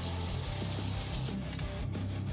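Background music with a steady low bass.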